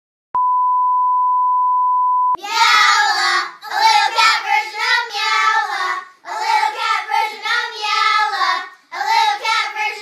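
A steady pure beep lasting about two seconds, then a very high-pitched, childlike voice singing in short phrases with brief pauses between them.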